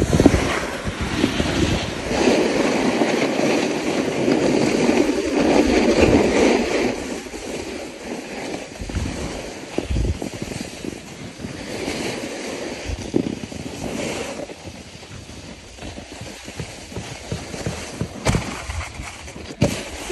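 Rushing wind on a phone microphone with the hiss and scrape of a snowboard sliding over packed snow, loudest in the first few seconds and easing off later, with a few low thuds from buffeting.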